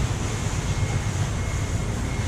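Steady low rumble with a hiss over it: the background noise of a working wholesale fish market hall, with no single event standing out.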